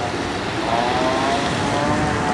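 Wind rushing on the microphone with the wash of surf, and a distant engine droning underneath, rising slightly in pitch.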